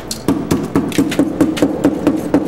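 Dead-blow hammer striking ice on the plastic floor of a refrigerator's freezer compartment in quick, even blows, about four a second, each with a short ringing tone. The ice has built up over the freezer's drain hole and is being broken up to clear it.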